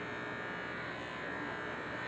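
Corded electric hair clippers with a number 4 guard buzzing steadily as they are guided up through a mannequin head's hair, blending out a weight line.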